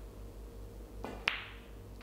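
A snooker shot: a single sharp click of the cue tip striking the cue ball about a second in, with a brief ring after it, over a steady low hum.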